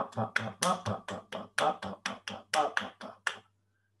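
A man's voice demonstrating a straight-eight beat: a quick, even run of short percussive syllables, about five a second, each given equal weight. It stops about three and a half seconds in.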